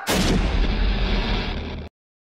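A trailer sound effect: one heavy boom like artillery fire hits at the start and leaves a long rumbling tail. It cuts off abruptly just before the end.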